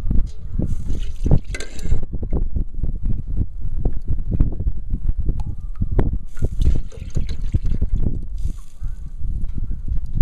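Water and waste fat bubbling at a gentle boil in a large aluminium pot over a wood fire, making a dense, irregular run of low pops and thuds. Brief bursts of hiss come about a second in, and again around seven and nine seconds.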